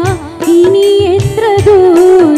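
A woman singing a Malayalam stage song live through a microphone, holding long wavering notes with quick ornamental turns, over a band with keyboard and a regular drum beat.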